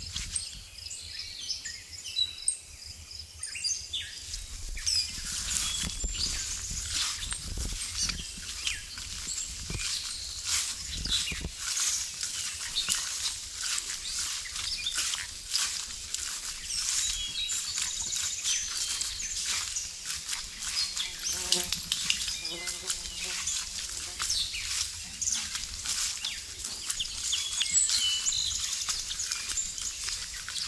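Footsteps swishing through wet grass and undergrowth on a woodland trail, with birds chirping and calling throughout. A short pitched call is heard about two-thirds of the way through.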